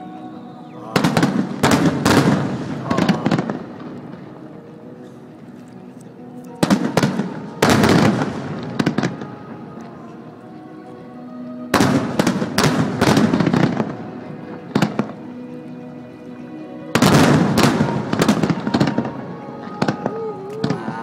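Aerial fireworks shells bursting in four volleys of rapid sharp cracks and bangs, roughly every five seconds, with music playing steadily underneath between the volleys.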